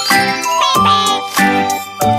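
Upbeat children's background music with a steady beat, about three beats every two seconds, and jingling chimes. A bright swooping run of chime notes comes about halfway through.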